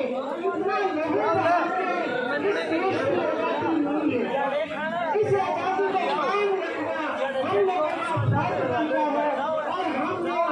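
Many people talking at once: overlapping chatter of a gathered group, with no single clear voice.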